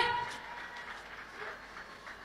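A man's voice trails off at the start, then only low, steady background noise of the room remains.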